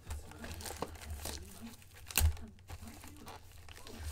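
Plastic wrapping on a hockey trading-card retail box crinkling and tearing as it is pulled open by hand, with one sharp snap about two seconds in.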